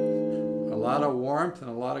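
Guild DeArmond Starfire hollow-body electric guitar played with a clean tone: picked single notes, the last one struck right at the start and left ringing as it fades. A man's voice comes in about a second in.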